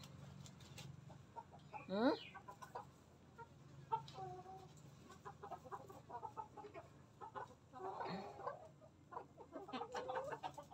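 Silkie chickens clucking quietly in short, scattered calls, with a low steady hum underneath.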